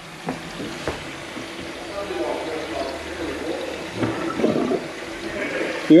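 Water running steadily from a mixer tap into a kitchen sink bowl and draining down the plughole.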